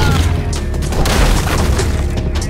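Loud film soundtrack: dramatic score music with a deep, booming low end and sharp hits, with a burst of noise about a second in.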